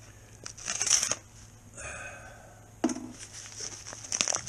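Padded paper mailer envelopes crinkling and rustling as they are handled, in irregular bursts, with a short knock about three seconds in.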